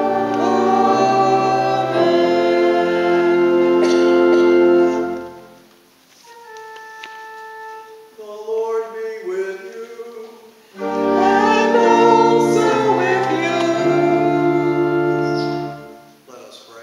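Church organ accompanying congregational singing in held, steady chords. About five seconds in the full sound drops away to a softer passage of a few held notes and a short sung line, then organ and singing come back together about eleven seconds in and stop just before the end.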